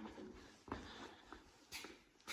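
Near silence: faint indoor room tone with two soft, brief sounds about a second apart.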